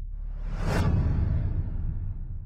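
Whoosh sound effect for an animated logo, swelling to a peak a little under a second in and then fading, over a low rumble.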